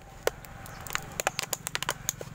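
Scissors cutting through a thin plastic water bottle: a quick, irregular run of sharp snips and crackles of the plastic.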